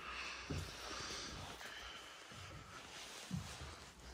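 Faint shuffling footsteps on a wooden floor, with two soft thumps, one about half a second in and one a little after three seconds.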